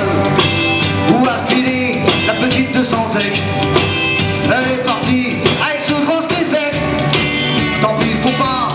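Live Breton rock band playing a song: a male lead voice singing in French over electric bass, a drum kit, electric guitar and keyboards, with a steady rock beat.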